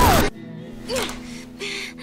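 Cartoon soundtrack: a frantic shouted line over loud noise cuts off suddenly just after the start, leaving quiet background music with a brief gasp about a second in.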